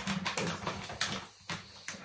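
Handling noise from a pack of dishwasher capsules being picked up and moved: a string of short clicks and rustles.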